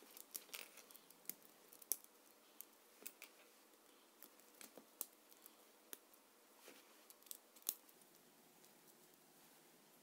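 Faint plastic clicks and small snaps of Lego Technic beams being handled and pressed onto the pins of a Lego differential housing, coming irregularly, the sharpest about two seconds in and again near the eight-second mark.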